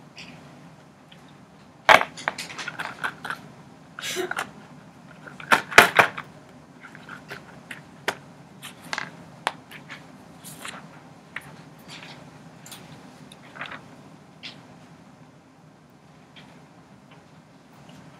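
Crayons and a paper handout being handled on a desk: scattered sharp clicks and knocks, the loudest about two and six seconds in, then lighter taps and paper rustles as the sheet is turned over.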